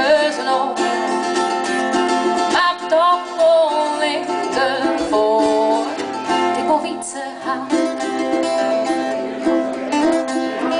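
A woman singing a folk song in Frisian, accompanied by a ukulele and a strummed acoustic guitar.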